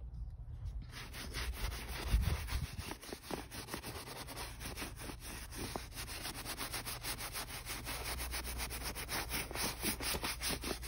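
A hand rubbing over a painted cotton cushion cover in quick, even, scratchy strokes, the sound of the stiffened painted fabric being worked by hand. There is a low bump about two seconds in.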